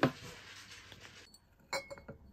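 Glass clinking: a cut-glass vase knocks against other glass and ceramic vases, two quick clicks with a short ring near the end. Before it come a sharp knock and a soft rustle of leafy branches being handled.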